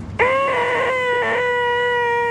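A man's voice making a long, nasal "eeeeeh" held at one pitch, the "most annoying sound in the world". It starts a moment in and wavers briefly about a second in.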